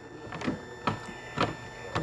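Four faint clicks about half a second apart over quiet room tone.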